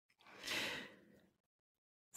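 A woman's short breath drawn in between sentences, soft and brief, followed by dead silence.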